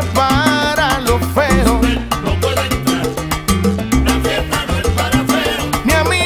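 Salsa band playing an instrumental stretch, with repeating bass notes and percussion under pitched melodic lines.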